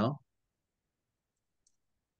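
The end of a man's spoken word, then near silence broken by one faint, short click a little over one and a half seconds in.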